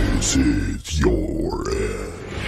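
A deep, growling voice over a low rumble, with a brief drop-out just under a second in.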